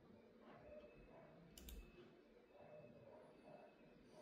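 Near silence: room tone, with one faint, brief click about one and a half seconds in.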